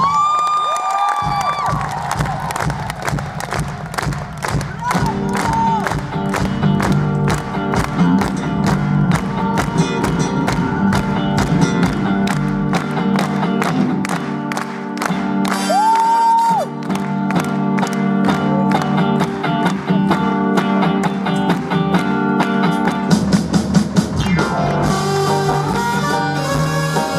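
Live rock band playing with a steady drum beat under electric guitar. A sung note is held briefly at the start.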